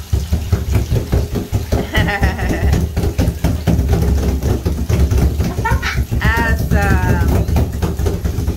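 Wet hands slapping and patting a bathtub wall over and over in quick, uneven strokes. High, wavering children's voices come in about two seconds in and again between six and seven seconds.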